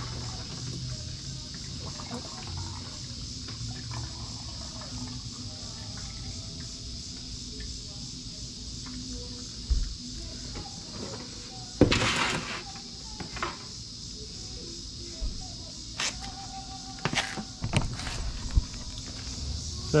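Used engine oil pouring from the spout of a plastic drain pan into an empty quart oil jug, a steady trickle as the drained oil is measured. A few knocks of the plastic pan being handled stand out, the loudest about twelve seconds in and several more near the end.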